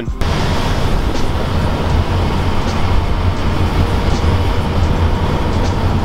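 Steady road and engine noise heard from inside a moving vehicle, a low rumble with a rushing hiss.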